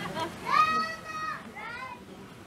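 A child's high-pitched voice calling out: one long held call, then a shorter one that bends down.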